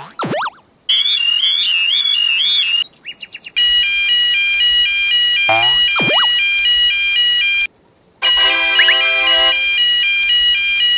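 Electronic level-crossing warning alarms: a warbling alarm for about two seconds, then a two-tone alarm switching steadily between a higher and a lower tone, two or three changes a second. Short sliding-pitch cartoon sound effects play at the start and around the middle, and a buzzier alarm tone joins the two-tone alarm briefly near the end.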